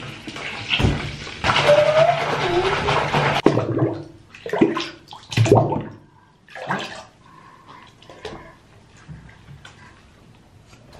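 Bath water splashing and sloshing in a bathtub as a toddler plays in it: a couple of seconds of continuous splashing, then several separate splashes that die away.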